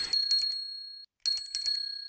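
A bicycle bell rings two quick double rings, ting-ting and then ting-ting again about a second later. Each ring fades away after it is struck.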